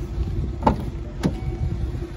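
Ford Mustang's driver's door being opened: two sharp clicks from the handle and latch over a steady low rumble.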